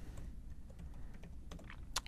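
A few faint computer keyboard keystrokes and clicks, the sharpest one near the end as the login is submitted.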